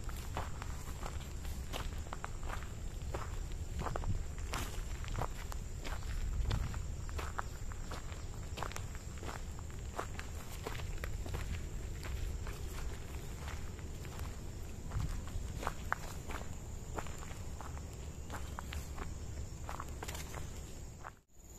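Footsteps walking steadily along a dirt path strewn with dry leaves and grass, a continuous run of irregular crunching steps.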